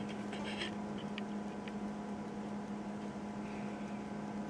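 A few faint scratches and light clicks in the first two seconds as test-lead probe tips are pressed onto the solder pads of an LED strip, over a steady low hum.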